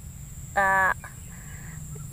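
A chicken calling once, a short steady-pitched note about half a second in, over a steady low background rumble.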